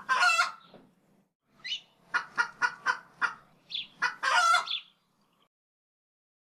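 Chicken clucking: a quick run of about five short clucks, then a longer drawn-out squawk a second later.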